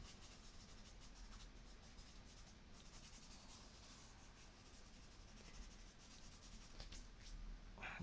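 Faint rubbing of fingers across coloured paper, blending chalk and charcoal in repeated strokes.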